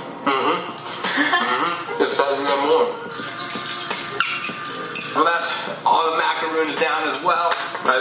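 Speech: a man's voice talking in short phrases, with nothing else standing out.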